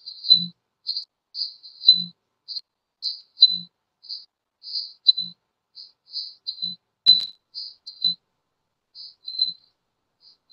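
A cricket chirping in short high-pitched bursts, about two a second, picked up through a meeting participant's microphone. There is a soft low blip under some of the chirps and one sharp click about seven seconds in.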